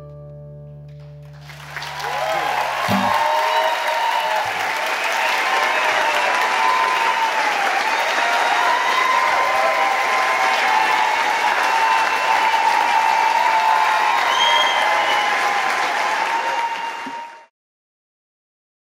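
Audience applause and cheering at the end of a song, loud and sustained, while the last ringing chord dies away in the first few seconds. The applause cuts off abruptly near the end.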